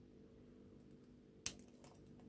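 Faint clicking of a lock pick working the pin-tumbler cylinder of an Abus 83CS/45 padlock, with one sharp click about one and a half seconds in as a pin sets.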